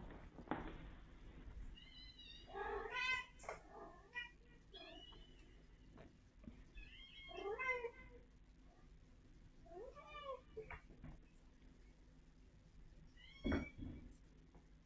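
Domestic cat meowing, about five separate calls spread out over several seconds, each one short and bending in pitch.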